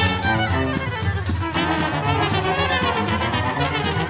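Live band music in an instrumental passage: brass and violins playing over a steady percussive beat.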